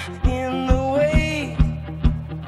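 A man singing a rock song live while strumming an archtop guitar, the strums falling about twice a second under a held, sliding vocal line.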